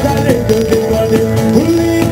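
Tammurriata music: a man singing a long held, wavering melodic line over the steady, quick beat of a tammorra, the large southern Italian frame drum, with its metal jingles rattling on each stroke.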